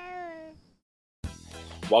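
A baby's whining cry: one drawn-out, slightly falling note that stops about half a second in. After a short silence, a man's voice begins near the end.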